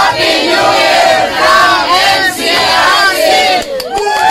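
A group of people shouting together loudly, a crowd cheer with many voices overlapping.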